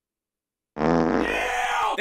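Dead silence, then about a second in a low, buzzy comedic sound effect that lasts a little over a second and drops in pitch at the end, an anticlimax sting for an unimpressive reveal.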